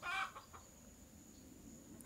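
A chicken giving one short, faint cluck at the very start.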